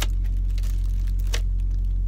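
Steady low rumble of a truck's engine heard inside the cab, with a few light clicks and rustles as the heater's wiring cord is handled.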